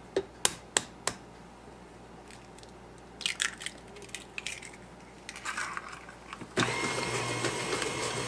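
An egg is rapped a few times on the rim of a stainless steel mixing bowl and its shell crackles as it is pulled apart. A KitchenAid stand mixer then switches on a little before the end and its motor runs steadily.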